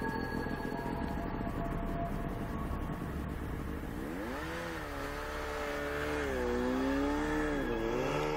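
Snowmobile engine running with a rapid low beat, then revving up about four seconds in as the machine pulls away, its pitch rising and wavering up and down.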